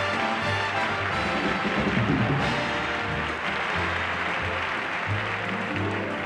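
Live orchestra playing walk-on music, with audience applause mixed in.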